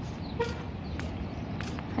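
Outdoor street background: a steady low rumble with regular light ticks a little over half a second apart, like walking footsteps, and one brief high beep about half a second in.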